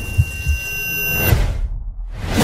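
Film-trailer sound design: a steady high ringing tone over low thumps and rumble. The ringing cuts off sharply about a second and a half in, leaving only a low rumble.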